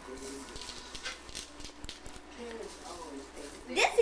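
Quiet, indistinct voices of children and adults talking in a small room, with a few faint clicks of handling. Near the end, a voice rises sharply in pitch.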